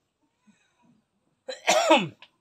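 A person coughing once, loudly, about one and a half seconds in, the sound dropping in pitch as it ends.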